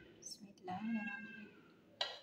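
A domestic cat meowing: one drawn-out meow that rises and falls in pitch, starting a little under a second in.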